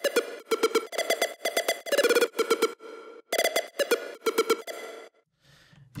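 Big room synth lead built from square waves playing a rapid staccato riff, each note topped with a short bright-noise click layered in to help it cut through the mix. The playback stops about five seconds in.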